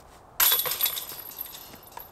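A disc golf putt striking the basket's hanging metal chains: a sudden jingling crash about half a second in that rings on and fades over about a second and a half as the disc drops into the basket, a made putt.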